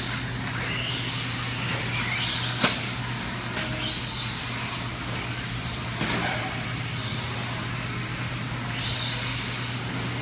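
Electric 1/10 RC buggies running on an indoor dirt track, their brushless motors whining and rising in pitch each time they accelerate out of a corner. One sharp knock about two and a half seconds in.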